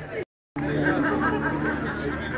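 Indistinct chatter of several voices, cut off by a brief dead-silent gap about a quarter second in. After the gap the chatter is louder, with a steady low drone beneath it.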